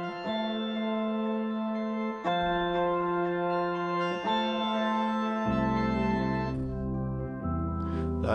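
Sampled Suitcase 73 electric piano melody loop with sustained chords that change about every two seconds. A deep bass part comes in about two-thirds of the way through.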